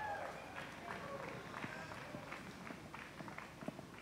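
Quiet outdoor scene with faint, scattered footsteps on a dirt and leaf-littered slope, and distant spectators talking faintly.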